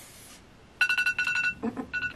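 A run of short, high electronic beeps, three or four in quick succession, starting about a second in.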